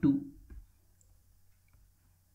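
A short click followed by a few faint ticks from a stylus on a drawing tablet as handwriting is written on screen.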